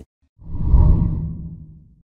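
A low whoosh sound effect for an outro graphic: it swells about half a second in and fades away over the next second and a half.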